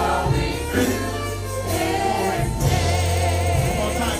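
Live gospel worship music: voices singing a hymn over a band of electric keyboard, saxophone and drum kit, with steady sustained bass notes.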